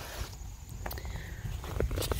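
Footsteps and rustling through pumpkin vines and leaves as someone steps carefully into the patch, with a few soft snaps and brushes.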